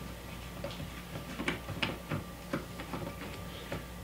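A bubble humidifier bottle being threaded by hand onto an oxygen concentrator's outlet nut: faint, irregular small clicks and ticks from the turning threads and the fingers on the plastic.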